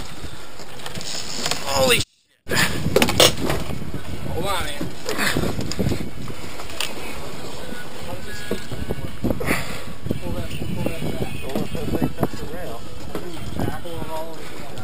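Indistinct voices of the boat crew over steady wind and water noise at the boat's side. The sound cuts out completely for about half a second about two seconds in.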